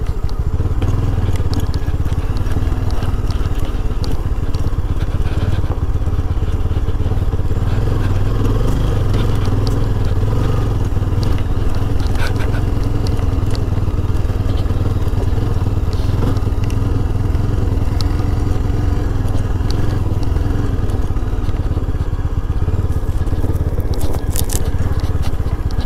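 Yezdi Scrambler's single-cylinder engine running steadily as the motorcycle is ridden, with crunching and scraping from the tyres on a rough mountain road.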